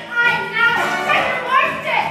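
A stage cast singing and calling out over backing music, many high voices sliding in pitch, heard through the hall from the audience.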